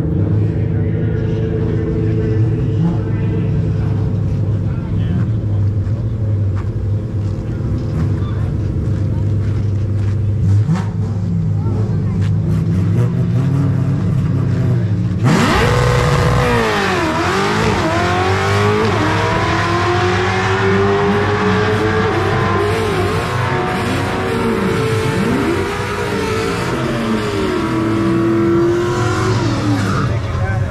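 Coyote Stock Fox-body Mustang's 5.0-litre Coyote V8 idling at the drag-strip starting line, then launching about halfway through. The engine revs hard up through several gear changes, each a rising pitch that drops back, and fades as the car runs away down the track.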